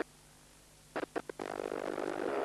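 The sound of a speedway race on an old videotape drops out abruptly to near silence. About a second in there are four short crackles, and then the motorcycle engine noise comes back for the last half second: a tape dropout or glitch.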